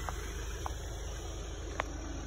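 Car engine idling with a steady low rumble, and a few faint clicks, the clearest shortly before the end.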